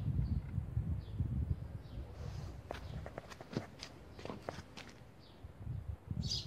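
Footsteps scuffing on a gritty concrete yard, with a low rumble for the first two seconds and then a run of sharp clicks and scrapes through the middle.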